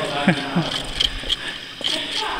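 A man laughing briefly, over the scuffing of footsteps on the tunnel floor as a small group walks on.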